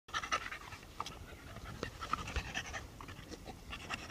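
Staffordshire bull terrier panting in short, irregular breaths.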